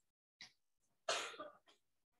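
A person's single short cough, about a second in.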